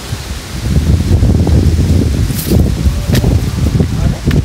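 Wind buffeting a handheld phone's microphone as it is carried over grass and rocks: an uneven low rumble with rustling and handling noise, and a couple of sharp clicks in the second half.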